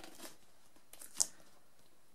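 A stack of DVD cases handled in the hands: a soft rustle at the start, then a few clicks about a second in, the loudest a single sharp, high click.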